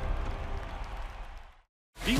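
The tail of a TV channel's animated logo sting: a held musical chord over a low rumble, fading away and dropping into dead silence about a second and a half in.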